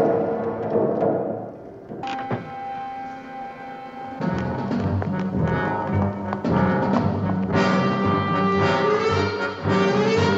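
Orchestral television score with brass and timpani. It thins out about a second in, a held chord enters at two seconds, then a low repeating figure starts at about four seconds and grows louder near the end.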